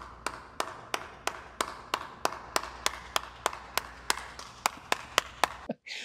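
Sharp, evenly spaced clicks, about three a second, over a steady low hum and faint hiss; they stop shortly before the end.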